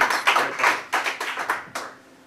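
A small audience clapping, the claps thinning out and dying away near the end.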